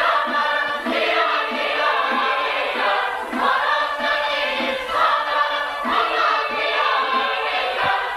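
An Armenian folk song sung by a choir, many voices in chorus over a steady rhythmic pulse.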